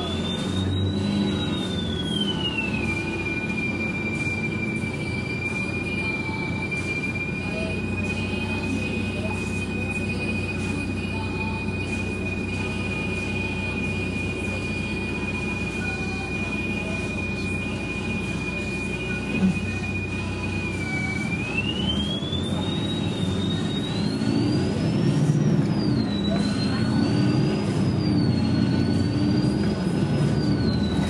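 Interior sound of a Bustech CDi double-decker bus: the engine runs with a steady high-pitched whine over its rumble. Near the end the bus pulls away, and the engine note and whine rise and fall repeatedly as it accelerates through the gears. A single knock comes shortly before it moves off.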